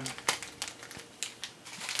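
Crinkling and rustling of packaging as cards and mail are handled, heard as an irregular run of short clicks and crackles.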